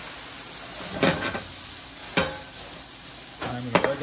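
Fava bean and mushroom ragu sizzling in a frying pan as it is stirred and moved about, with two sharp knocks against the pan about one and two seconds in.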